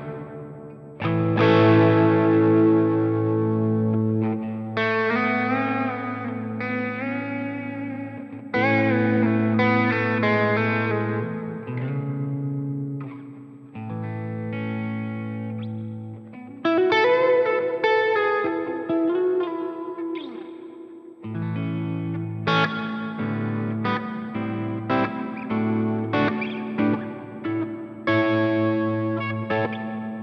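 Electric guitar with a clean tone played through the Sonicake Matribox II's plate reverb set to a long decay: a series of chords and single notes, each ringing on into a long reverb tail, with a note bent upward around the middle.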